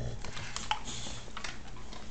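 Boxer dog chewing a treat, heard as scattered light clicks.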